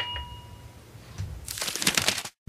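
A light clink that rings on for under a second, then a short crinkling rustle near the end.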